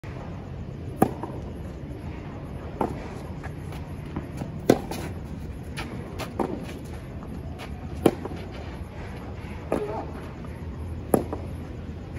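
Tennis ball struck back and forth by rackets in a rally: a sharp loud hit about every three and a half seconds from the near racket, with a fainter hit from the far end between each, over a steady low background noise.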